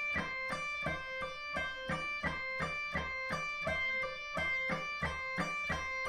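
Clean-toned electric guitar playing a slow, even run of single notes, about three a second: a left-hand legato finger exercise played both picked and with hammer-ons, aimed at making the two sound alike.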